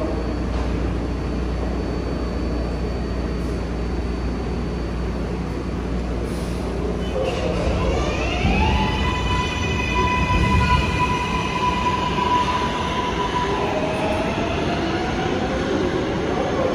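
R188 subway train accelerating: its propulsion gives a rising electric whine about seven seconds in, holds a steady high tone for a few seconds, then a lower whine climbs again near the end. A steady low rumble from the standing train underlies the first half.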